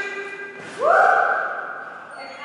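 A woman's drawn-out, high-pitched call to a dog, rising at its start and held for about a second. It comes shortly after a brief knock.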